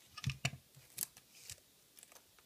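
Close-miked, crisp crunching of a fish-shaped wafer filled with airy chocolate as it is bitten and chewed. A few sharp separate crackles, the loudest just under half a second in and another about a second in.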